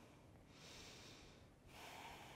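Faint breathing of a woman holding a standing yoga pose: two soft breaths, the first about half a second in and the second near the end.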